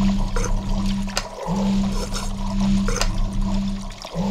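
Machinery sound effects for a cartoon factory: a steady low hum that cuts out and restarts about every two and a half seconds, with clicks and watery noise over it.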